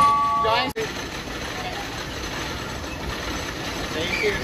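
A brief held chord of steady tones in the first moment, which wobbles and then cuts off abruptly, followed by steady noise while a wooden roller coaster's train climbs its lift hill.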